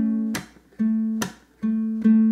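Low-G ukulele playing a fingerpicked blues vamp: the same low note on the fourth string's second fret is picked repeatedly, broken twice by sharp open-palm percussive slaps that mute the strings.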